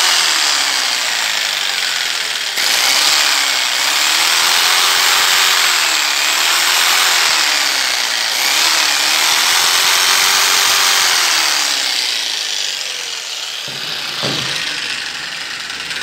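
A corded DeWalt jigsaw's brushed motor running with its pitch rising and falling in slow swells, and it becomes quieter about twelve seconds in. Its worn carbon brushes no longer make proper contact with the armature, so it runs weak and sparks inside the motor.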